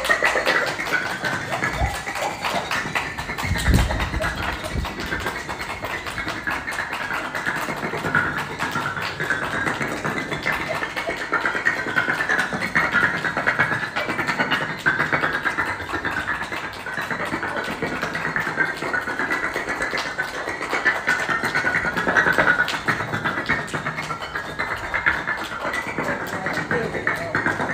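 Red clay bricks set up as dominoes toppling one into the next in a long chain, a steady rapid clatter of brick striking brick, with a heavier thump about four seconds in.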